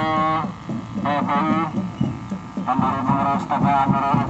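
A man's announcement in Indonesian through a horn loudspeaker, harsh and distorted, in three short phrases with brief pauses between them.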